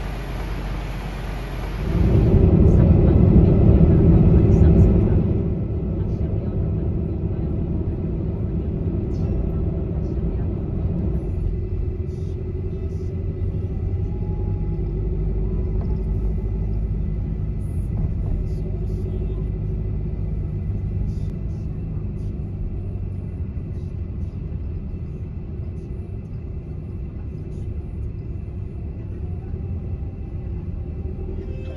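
Steady low road and engine rumble heard from inside a moving van, louder for about three seconds near the start. It opens with a brief hiss.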